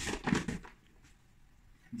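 Shredded cabbage rustling briefly as handfuls are dropped into a clear plastic tub, over in about half a second.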